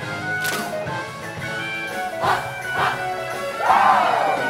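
Upbeat live band music with brass, played for a show-choir dance break, with sustained chords throughout. Short loud bursts cut through it about half a second in, twice a little after two seconds, and loudest just before the end.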